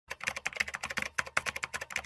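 Typing sound effect: rapid, uneven computer-keyboard keystroke clicks, about ten a second, matching text being typed out letter by letter.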